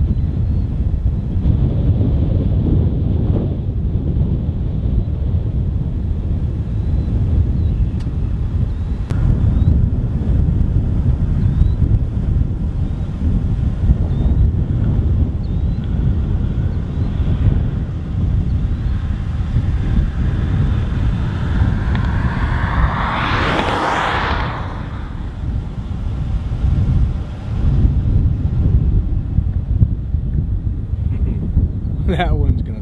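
Thunderstorm wind buffeting the microphone in a steady low rumble. About twenty-two seconds in, a vehicle passes on the road, its tyre noise swelling and then falling away.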